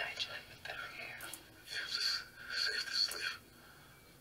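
Voices and sound from a video playing through a laptop's small built-in speakers, thin and tinny with almost no bass. The sound cuts off suddenly about three and a half seconds in.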